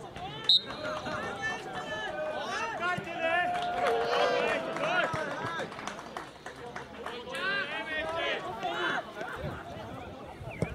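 Several voices calling out and talking across an open football pitch, overlapping. About half a second in there is one short, sharp, loud sound with a brief high tone.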